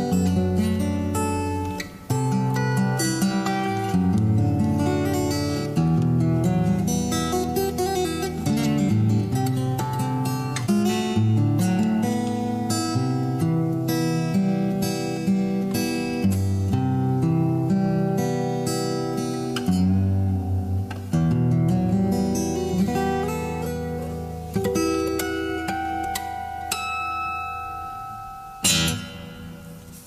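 Solo fingerstyle acoustic guitar playing a slow melody over picked bass notes. Near the end the piece closes and the last notes die away.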